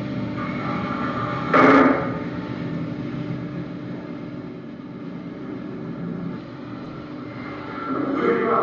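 Soundtrack of an installation video played over a video call: a steady low rumble with no speech, broken by one short, loud noise about one and a half seconds in.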